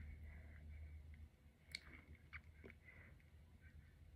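Near silence, with faint mouth and lip sounds and a few soft clicks near the middle as a twist-up lip pencil is drawn across the lips.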